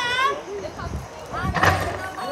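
High-pitched child's voice calling out at the start, then a loud shout about one and a half seconds in.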